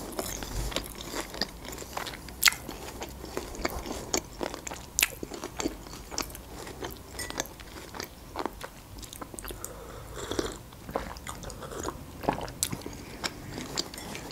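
Close-miked chewing of a strawberry-topped fried dough ball (lokma): wet mouth clicks and soft crunches, coming irregularly.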